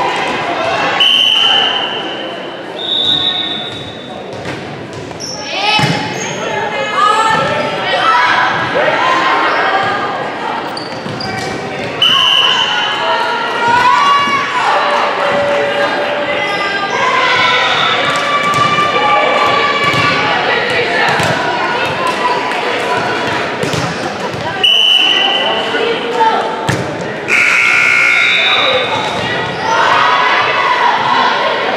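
Indoor volleyball play in a reverberant gymnasium: the ball struck and landing on the hardwood court, players and spectators shouting, with several short high-pitched tones.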